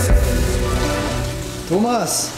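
Water running from a tap into a container, a steady hiss that slowly fades, with faint music under it and a short rising-and-falling tone near the end.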